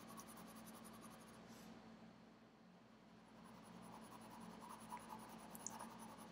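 Very faint scratch of a graphite pencil's side shading across smooth drawing paper in light strokes, with a few soft ticks in the second half.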